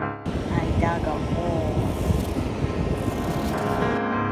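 Live beach sound: wind buffeting the microphone over the surf, with a voice calling out briefly about a second in.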